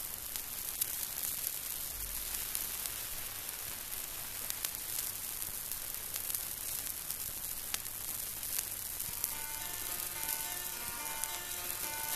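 Surface noise of an old record between two songs: a steady hiss with scattered clicks and crackle. Faint musical notes creep in about nine seconds in, just ahead of the next song.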